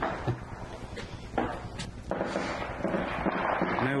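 Footsteps and phone-handling noise: a few knocks in the first two seconds, then a steady rustle from about two seconds in.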